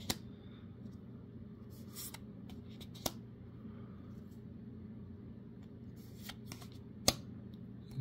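Magic: The Gathering trading cards being slid one by one off a hand-held stack: a handful of short card flicks and snaps, the sharpest near the end, over a faint low steady hum.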